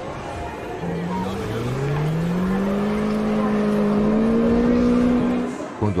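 Amusement-ride machinery sound effect: a low motor hum rising slowly in pitch and growing louder over a steady rushing noise, then cutting off shortly before the end.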